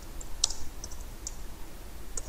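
Computer keyboard typing: a few scattered key clicks, the sharpest about half a second in.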